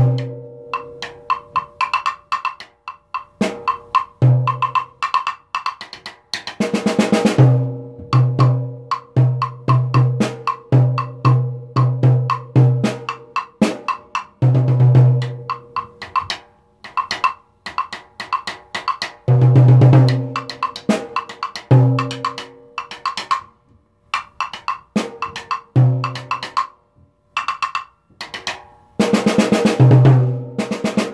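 Multiple percussion played with drumsticks on tom-tom, snare drum, snare drum rim and wood block at a fast tempo of about 200 beats per minute. Quick strokes move between the instruments, with runs of low tom notes, sharp clicks, and short rolls about a third and two-thirds of the way through and again near the end.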